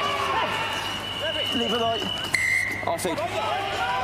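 Referee's whistle: a short, sharp blast a little past halfway, blown for an infringement at the breakdown that the commentary puts down to Japan being over-eager. Voices from the pitch and stands are heard under it.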